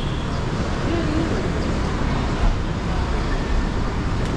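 Steady traffic noise from the road beside the building, a continuous low rumble. A brief faint voice about a second in.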